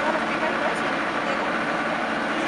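An excavator's engine running steadily, with indistinct voices talking over it.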